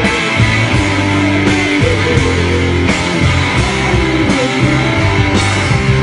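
Rock band playing live, led by electric guitar, picked up unmixed from the side of the stage.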